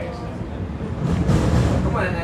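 MTR East Rail Line train running, heard from inside the carriage as a steady low rumble of wheels on track that gets louder about a second in. Faint voices in the background.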